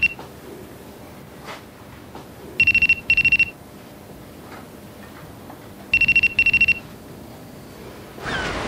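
Cordless telephone ringing with an electronic trill. It gives two double rings about three seconds apart, each a pair of short bursts on one high pitch.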